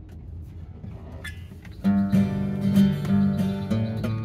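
Two acoustic guitars start strumming chords together about two seconds in, after a quiet opening.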